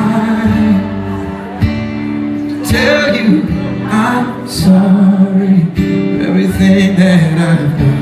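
A singer performing live through a PA, accompanying themselves on strummed acoustic guitar, with long held vocal notes. The recording is made from within the audience.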